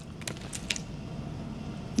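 A few light clicks and rustles of foil and paper fast-food wrappers being handled in the first second, then faint room noise.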